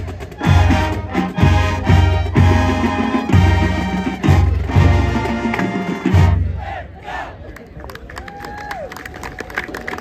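A high school marching band's brass and sousaphones play a run of loud accented chords, about one a second, that stops about six seconds in. A crowd then cheers and claps.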